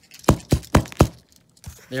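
Four quick, sharp knocks from handling the opened Zhu Zhu Pet toy hamster and its small parts against a tabletop, all within under a second.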